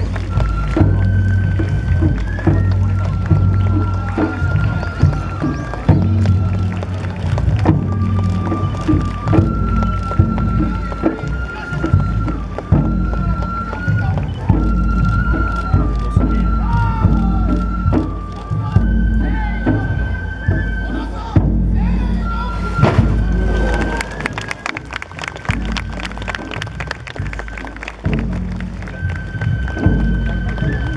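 Japanese festival-float hayashi music: a bamboo flute plays a melody in held, stepping notes over drum beats. The drumming gets busier about two-thirds of the way through.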